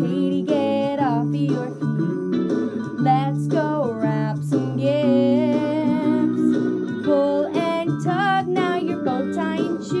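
Music: a sung Christmas song with instrumental backing.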